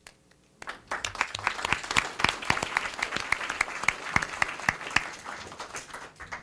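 Audience applauding: many hands clapping, starting about half a second in and thinning out near the end.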